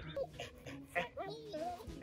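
A dog whining in a few short whimpers, over soft background music.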